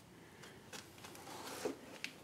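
Faint rustling and a few soft clicks from handling a handheld camera as it moves around the machine, with no hammer running.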